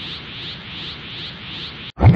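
Steady static-like hiss of an energy-aura sound effect in an animated intro, cut off suddenly just before the end.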